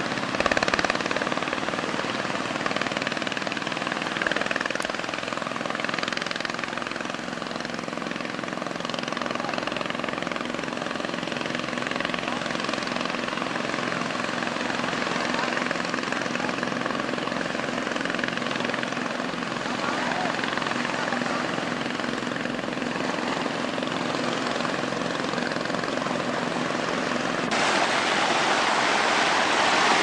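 A steady motor drone with several held tones under a wash of noise, growing brighter and hissier near the end.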